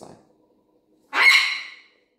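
A pet macaw squawks once about a second in, one loud call lasting under a second.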